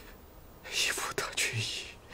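Speech only: a man saying a few words in a hushed, breathy voice, starting a little under a second in.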